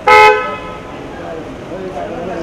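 A car horn gives one short, loud honk of about a quarter second right at the start, followed by people's voices.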